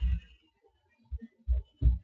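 A series of low, dull thumps, four in about two seconds at uneven spacing, the last one the loudest.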